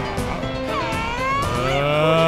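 A cartoon giant's deep, drawn-out wordless cry, with gliding pitch, over background music.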